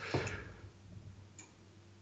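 A quiet pause holding a single faint click about one and a half seconds in.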